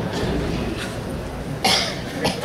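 A single short cough about one and a half seconds in, over the low hum of an audience in a hall.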